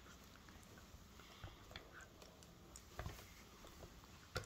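Near silence, with a few faint soft clicks and scrapes from a plastic spoon stirring melting chocolate and milk in a mug.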